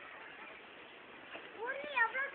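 Faint distant voices. Near the end a louder high-pitched call starts, rising in pitch.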